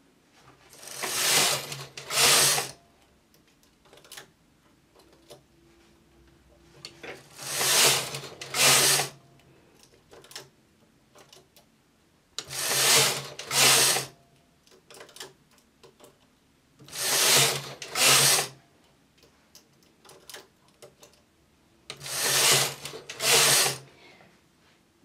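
Silver Reed knitting machine carriage pushed across the needle bed and back, five times about five seconds apart, each trip a pair of sliding rattles. Faint clicks come in between as single needles are moved by hand into holding position, one stitch at a time, to shape a rounded neckline in partial knitting.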